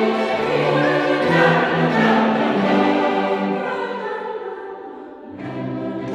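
Mixed choir singing with a string orchestra of violins and cellos, in a choral arrangement of a folk nursery rhyme. The sound dies away about five seconds in, and the next phrase comes in soon after.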